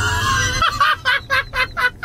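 A man laughing hard in quick bursts, about five a second, after a drawn-out startled cry that breaks off just over half a second in.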